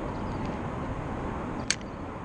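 Steady low rumble of traffic from the freeway overpass, with a single short click near the end.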